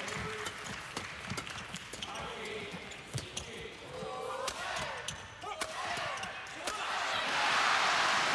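Badminton rally in an indoor arena: rackets strike the shuttlecock in a run of sharp cracks, with short squeaks in the middle. Crowd noise swells into loud cheering and applause near the end.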